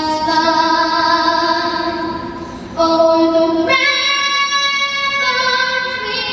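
A young girl singing the national anthem solo into a microphone, holding long notes with vibrato. The sound dips briefly about halfway through, then she comes back in and leaps up to a higher, louder note.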